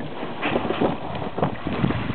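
Kayak hull sliding down a grassy bank, scraping and rustling over grass and dirt with a run of uneven knocks and bumps, then splashing into the pond as it hits the water.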